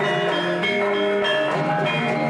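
Javanese gamelan ensemble playing: bronze kettle gongs of the bonang struck with padded sticks over other bronze metallophones and gongs, many ringing notes overlapping at a steady level.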